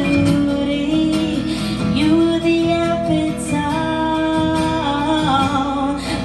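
A woman singing long held notes into a microphone, accompanied by an acoustic guitar.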